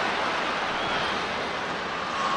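Steady crowd noise from a Gaelic football stadium crowd, heard through the match broadcast between commentary lines.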